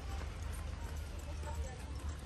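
Footsteps of people walking in sandals on a concrete path, over a steady low rumble on the microphone.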